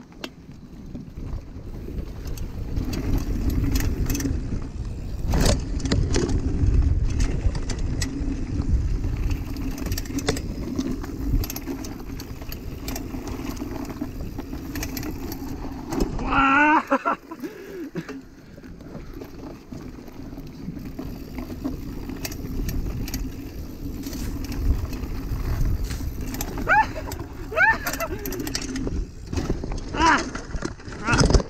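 Mountain bike riding fast over a dirt forest trail: a low rumble of tyres and wind on the microphone, with frequent rattling clicks and knocks from the bike over bumps. A short shout comes about halfway through.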